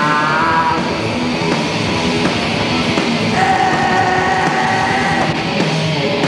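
Grunge band playing live: loud distorted electric guitar, bass and drums, with a sung line at the start. About halfway through, a high note is held steady for nearly two seconds.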